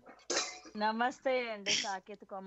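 A person's voice in a few short phrases, with two sharp, hissy bursts: one about a third of a second in and one near the end.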